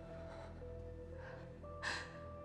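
Quiet, sustained film score of long held notes over a low drone, and near the end a woman's short, soft gasp.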